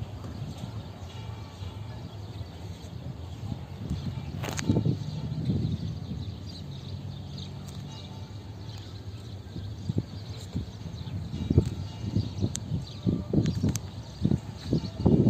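Low, steady rumble of approaching EMD GP38-2 diesel locomotives heard from a distance, under outdoor background noise. A sharp click about four and a half seconds in, and irregular low bumps in the last few seconds.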